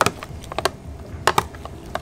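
Metal spoon stirring chopped vegetables and artichoke hearts in a plastic container, clicking against its sides a few times: one click near the start, one a little after halfway into the first second, and a quick pair past the middle.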